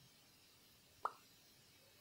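Near silence broken by a single short click about a second in.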